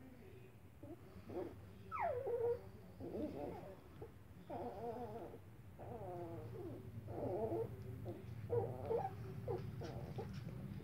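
A litter of young puppies whimpering and whining in short cries, about one a second, with one sharply falling squeal about two seconds in, over a low steady hum.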